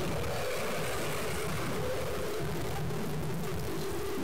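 River rapids rushing: a steady, even roar of whitewater.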